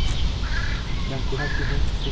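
A bird calling twice, two short calls about a second apart, over a steady low rumble of wind on the microphone.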